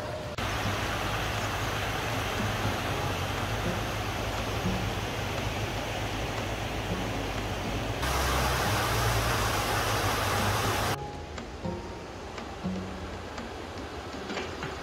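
Steady rushing of a shallow, rocky river's rapids, loud and even, under soft background music. The rushing cuts in suddenly about half a second in, turns brighter about eight seconds in, and cuts out suddenly about three seconds before the end.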